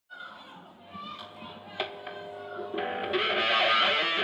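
A live rock band's electric guitar ringing out held notes over crowd voices, building up and growing louder in the last second or so.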